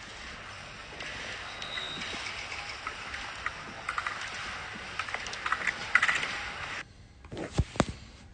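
Steady outdoor hiss from the ski slope, picked up by a phone microphone, with scattered faint clicks. It drops away abruptly about seven seconds in, and a few short thumps follow.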